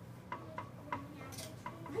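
A few soft clicks, roughly half a second apart, over a quiet room with a faint murmuring voice.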